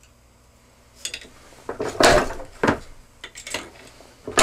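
Metal clanking and clatter from working a Freechex II gas-check punch and die in a small arbor press while handling a strip of thin aluminum flashing. After a quiet first second come several sharp knocks, the loudest about two seconds in.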